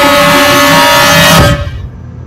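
Loud held chord from a film trailer's soundtrack, a dense stack of steady tones that cuts off suddenly about one and a half seconds in.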